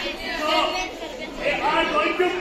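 People talking: speech with overlapping chatter from several voices.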